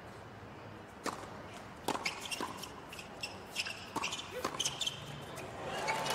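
Tennis ball struck by rackets in a doubles point: a serve about a second in, then a quick run of returns and volleys.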